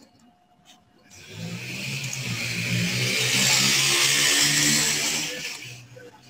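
A passing motor vehicle: a low engine hum and a rushing hiss that start about a second in, swell for a few seconds and fade away near the end.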